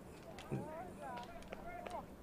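Faint, distant shouts and calls from players and onlookers at a football match, one a little louder about half a second in, with a few light knocks.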